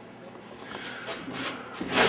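Faint handling noises: light rubbing and a few soft knocks.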